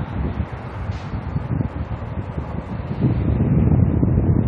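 Wind rumbling on the microphone of a handheld phone, growing louder about three seconds in.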